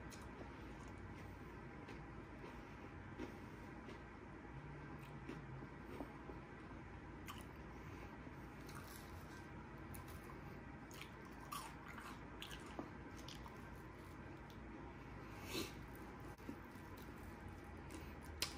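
Faint chewing of a fried chicken strip coated in crushed Hot Cheetos, with scattered soft crunches and clicks, more of them in the second half.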